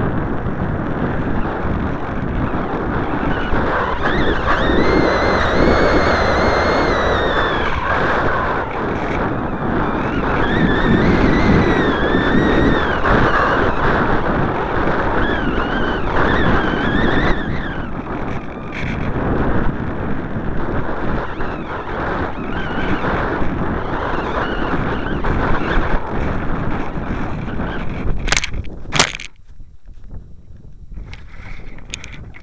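Airflow rushing over the microphone of a small keychain camera riding on a hand-launched glider in flight, with a whistle that rises and falls in pitch several times. Near the end a few sharp knocks as the glider touches down in grass, after which the rushing drops away.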